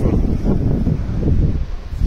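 Wind buffeting the microphone: a rough, low rumble that eases briefly near the end.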